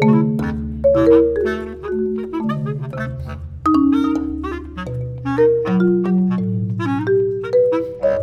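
Bass clarinet and marimba duo playing contemporary classical music: quick, busy marimba notes over long-held low bass clarinet notes that change pitch every second or so.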